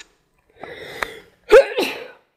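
A person sneezing: a drawn-in breath, then one loud sneeze about one and a half seconds in.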